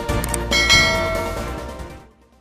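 Upbeat intro music with a bell chime struck about half a second in, ringing out and fading away: the notification-bell sound effect.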